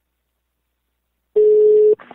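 Silence, then about a second and a third in a single steady telephone tone heard over the phone line. It is the ringing tone of an outgoing call just before it is answered, and it lasts about half a second before it cuts off.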